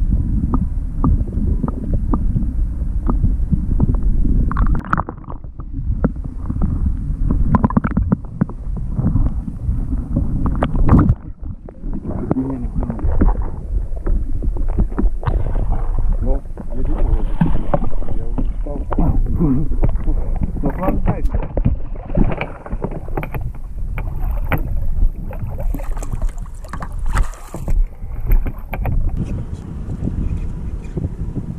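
Wind and water rumbling on the microphone, with scattered knocks and splashes of water.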